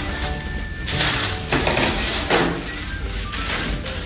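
Background music, with tissue paper rustling a few times in short bursts as it is cut with scissors and handled.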